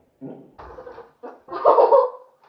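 Short squawking, cluck-like cries in several brief bursts, the loudest near the end.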